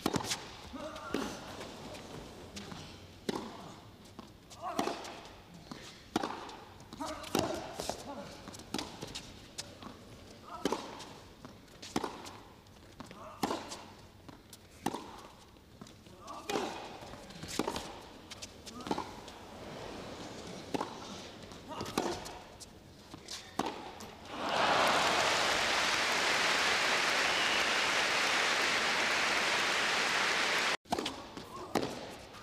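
Tennis rally on an indoor carpet court: racket strikes and ball bounces in a steady back-and-forth, about one hit a second. About 24 seconds in, the point ends and the crowd breaks into loud applause that carries on to the end.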